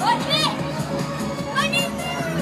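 Loud fairground music playing, with a child's high-pitched voice calling out twice in rising-and-falling whoops.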